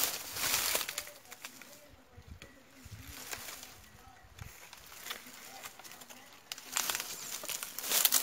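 Dry sugarcane leaves and stalks rustling and crackling as someone handles and pushes through a clump of cane, louder at the start and again near the end, with scattered small crackles between.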